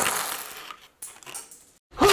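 A tray of low-profile plastic keycaps spilling onto a desk mat: a sudden loud clatter that dies away over about a second, a few more pieces rattling just after, then the sound cuts off short before the end.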